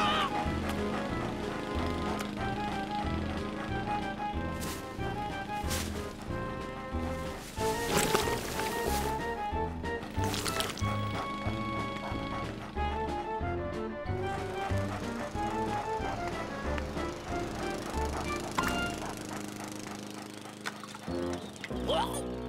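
Cartoon background music with a steady, bouncy bass beat under short repeated melody notes. A few sharp sound effects punctuate it, the loudest about eight seconds in.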